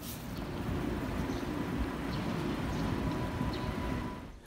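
Steady low rumble of city street traffic, with a faint thin steady tone above it.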